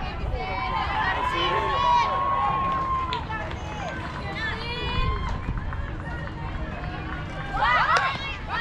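Several young players' voices calling and chanting at once across a softball field, with one long held call about a second in and a louder burst of calls near the end as the pitch is delivered.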